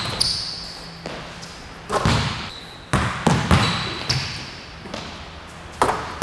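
Basketball bouncing hard on a gym floor in a handful of irregular dribbles, several close together about three seconds in, each bounce echoing in the gym.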